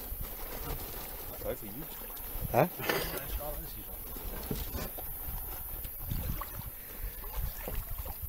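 A few brief, faint snatches of men's voices over a steady low rumble.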